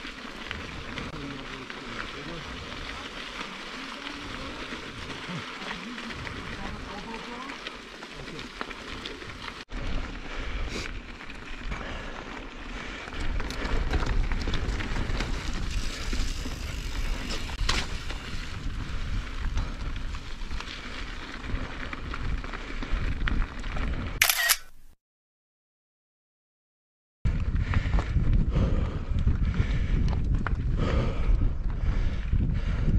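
On-bike action-camera sound of a mountain bike climbing a rocky gravel trail: steady tyre-and-trail noise, which jumps to a louder sound with a heavy low rumble after a cut about ten seconds in. The sound drops out completely for about two seconds near the end, then returns.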